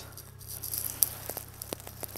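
Faint rustling handling noise as the camera is moved, with two light clicks, one about a second in and another shortly before the end.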